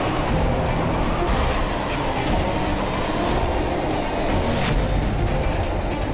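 Dramatic background score over a deep, steady rumbling drone, with one brief whoosh-like sweep about four and a half seconds in.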